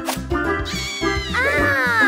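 A high-pitched, meow-like cartoon creature call over upbeat children's background music with a steady beat. The call is one long cry starting a little under a second in, rising and then falling in pitch.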